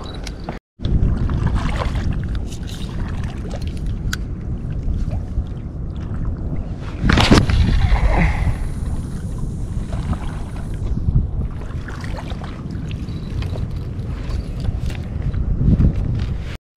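Wind buffeting an action-camera microphone on an open shoreline, a steady low rumble that rises and falls, with a louder gust about seven seconds in.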